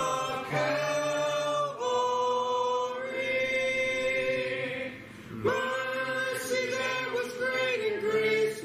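A group of voices singing a hymn together, with a long note held for about three seconds in the middle.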